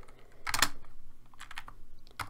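Computer keyboard keystrokes: a quick cluster of key taps about half a second in, then a few lighter taps around a second and a half.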